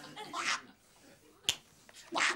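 A short breathy hiss, then about a second later a single sharp click.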